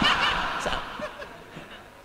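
Audience laughing, loudest at the start and dying away over about a second and a half.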